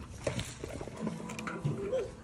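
A person's voice making short wordless sounds, one rising at the end, with a few light clicks.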